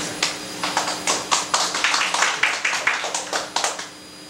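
Scattered hand clapping from a small group, a few people applauding unevenly, several claps a second, dying away near the end.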